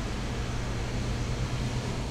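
Steady low hum under an even hiss, the continuous background noise of a machine or ventilation indoors.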